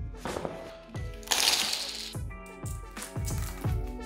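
Background music with a steady drum beat and held tones, with a loud burst of hiss about a second in.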